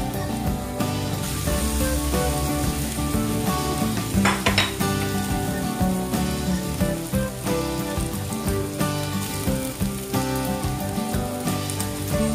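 Food sizzling in oil in a stainless steel frying pan as cooked rice is added and stirred with a spatula, with a louder rush of sizzling about four seconds in as the rice goes in.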